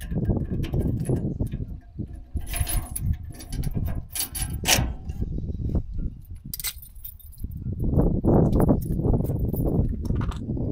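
Metal trailer-hitch hardware being handled: safety chains jangling and clinking against the coupler in scattered bursts, as the trailer is unhitched. Underneath runs a low rumble of wind on the microphone, strongest in the last few seconds.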